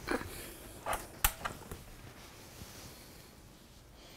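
A sharp click of a switch being flipped a little over a second in, with a softer knock just before it and faint handling noise around it.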